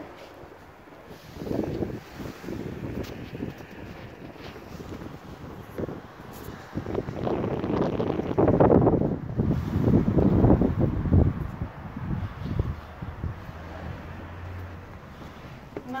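Wind buffeting the phone's microphone in gusts, loudest from about seven to eleven seconds in.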